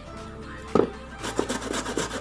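Cassava being scraped against a flat metal hand grater: one knock a little before the middle, then a quick run of rasping strokes in the second half, over background music.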